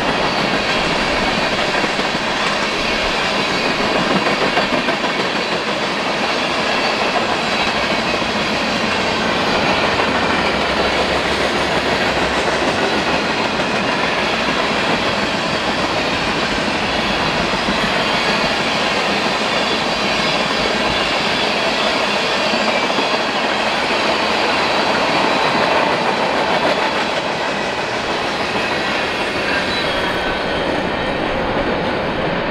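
Freight train of tank cars and covered hopper cars rolling past close by: a steady, loud noise of steel wheels on rail with clickety-clack over the rail joints.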